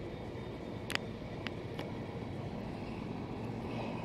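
Steady low outdoor background rumble, like distant traffic, with three short sharp clicks about a second in, at a second and a half, and just before two seconds.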